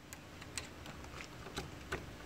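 Faint, irregular small clicks and taps of a plastic transmission-cooler hose connector being handled at a radiator's plastic end tank.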